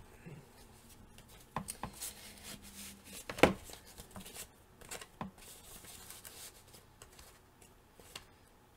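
Hands handling a paper craft tag trimmed with fibres: soft paper rustling with scattered small taps and clicks, one sharper click about three and a half seconds in.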